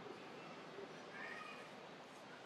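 Faint call of a long-tailed macaque: a short, high cry about a second in, over quiet forest background.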